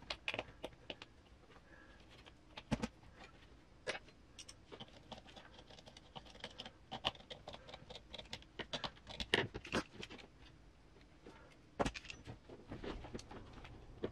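Irregular small clicks and knocks of hands fitting a 1/10 RC crawler wheel onto its axle hub with a metal wheel pin and M4 nut, and a nut driver turning the nut; a few louder knocks stand out about three seconds in, around nine to ten seconds, and near twelve seconds.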